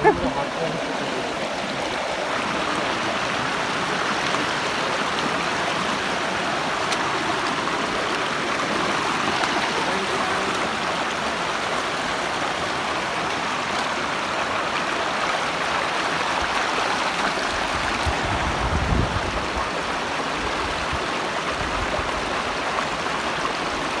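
Shallow rocky stream rushing in small cascades over boulders: a steady, even rush of water. About three-quarters of the way through there is a brief low rumble.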